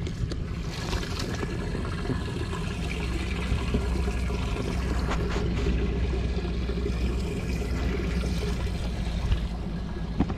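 Water trickling and dribbling over the steady low hum of an idling boat motor, with a few sharp knocks from handling gear in the boat.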